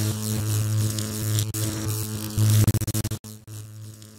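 Steady electrical hum and buzz used as a logo sound effect. Near the end it stutters on and off rapidly, cuts out for an instant, and comes back as a fainter hum.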